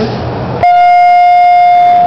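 Otis 2000H hydraulic elevator's hall lantern arrival bell sounding one long, steady, loud ring that begins suddenly a little over half a second in. Its single clear tone sounds like a "luxury" elevator bell.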